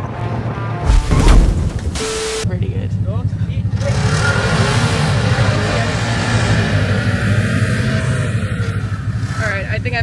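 Snowmobile engines running, with wind buffeting the microphone and a very loud gust or jolt about a second in; the sound changes abruptly a couple of times between clips, and voices call out over the engine.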